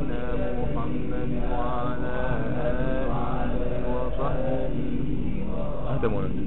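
Male voices chanting a melodic devotional chant, with long pitched lines that rise and fall, in the manner of a closing prayer of blessing on the Prophet.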